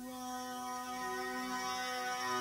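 A quiet, sustained keyboard chord, held steady, with a lower note joining about a second in.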